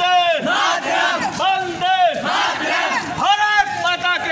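A group of boys shouting slogans together, short rising-and-falling chorus shouts about two a second, with a brief pause past the middle.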